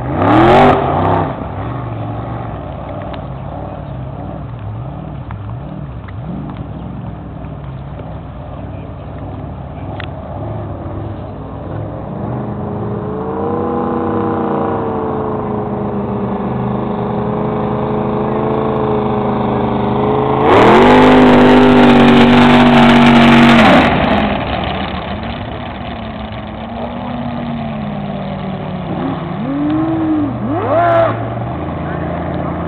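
Racing powerboat engines running hard on the water: a steady drone whose pitch rises as a boat approaches, growing to a very loud passage for about three seconds past the middle as it goes by close, then fading. A short loud rising sound comes right at the start and another near the end.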